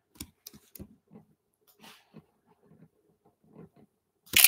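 Faint, soft clicks and taps at irregular intervals, several in the first second and a few more scattered later.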